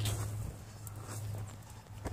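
Faint knocks and rubbing as someone climbs on metal playground bars, over a steady low hum.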